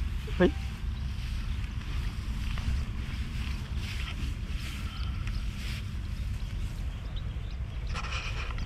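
Wind buffeting the microphone: a steady low rumble throughout, with a brief spoken exclamation about half a second in.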